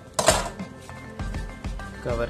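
Background music, with one short rustle of a plastic bag about a quarter second in as dough is pressed inside it.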